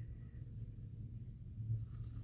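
Quiet room tone with a low, steady hum and no distinct sound event.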